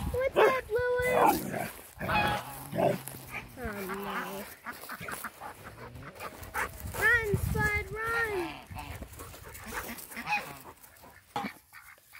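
Domestic geese and ducks honking and quacking, a run of separate calls one after another, fading toward the end.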